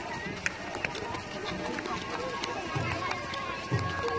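Footsteps of a crowd walking along a paved road: sandals and shoes shuffling and scuffing, with voices chattering among the walkers.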